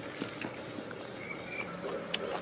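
Close-miked mouth sounds of someone chewing a mouthful of raw leafy herbs: faint, sparse wet clicks and crunches.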